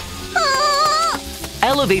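A cartoon character's high, wavering cry lasting under a second, over soft background music. A voice then starts speaking near the end.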